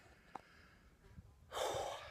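A low outdoor hush, then about one and a half seconds in a short, heavy breath out close to the microphone.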